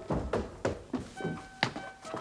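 Footsteps of a person running on a staircase, a quick series of thuds about three a second, over music of sustained steady tones.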